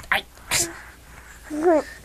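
A baby's short vocal sound near the end, rising then falling in pitch, after a short sharp noise about half a second in.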